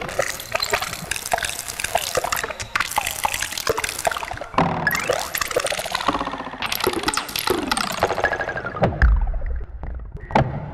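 Experimental electronic soundtrack made of dense short pops and clicks and sliding tones that sweep up and down, with a deep low rumble coming in near the end.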